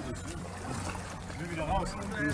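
Quiet, murmured voices of people talking, with a short "oh" near the end.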